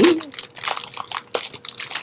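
Clear plastic packaging crinkling and crackling in irregular bursts as hands handle bags of diamond painting drills.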